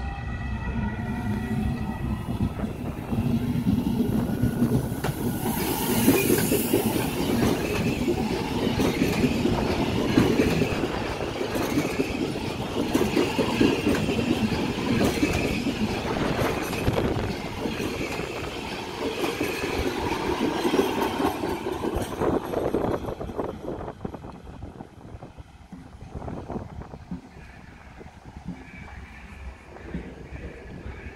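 A DB class 442 (Bombardier Talent 2) electric multiple unit approaching and rolling past close by, with a high electric whine as it comes in, then loud wheel and rail noise. The noise falls away after about 23 seconds.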